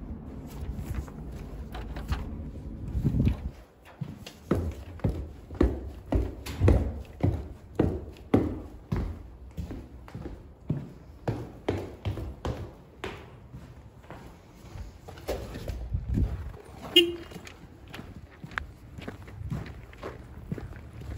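Footsteps of boots on a hard floor at a steady walking pace, about two steps a second. The first few seconds hold a low rumble that ends in a thump, and a brief squeak sounds near the end.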